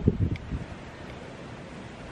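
Wind on the microphone: a few low gusts in the first half second, then a steady rush of noise.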